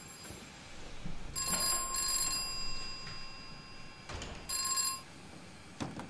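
A bell rings in three short bursts, two close together about a second and a half in and a third near five seconds, with its tone hanging on between them. A single sharp click sounds just before the end.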